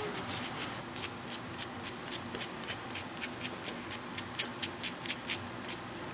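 A nail buffer block rasping back and forth across a fingernail in quick, even strokes, several a second, filing down the nail surface to prepare it for an acrylic overlay.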